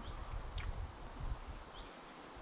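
A person chewing a mouthful of toasted ham-and-cheese sandwich (croque monsieur), soft irregular mouth sounds picked up close, with a couple of short faint bird chirps, one near the start and one near the end.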